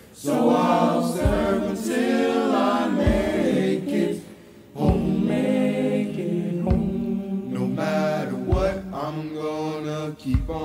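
Youth choir singing a gospel song in several voices, over a low thump that falls about every two seconds. The singing breaks off briefly about four seconds in, then comes back.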